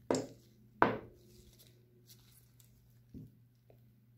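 Sharp metal knocks from handling a flexible pin-clamping fixture with stainless steel pins, its pins locked. There are two loud knocks with a short ring, about three-quarters of a second apart, then a fainter knock about three seconds in.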